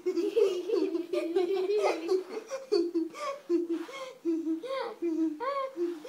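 A child laughing and vocalizing without words, in a run of short, high-pitched repeated calls through the second half.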